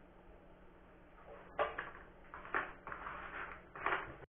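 Small hand tools and parts being handled and set down on a wooden workbench: a few light knocks and clatters starting about one and a half seconds in, over a faint steady hum.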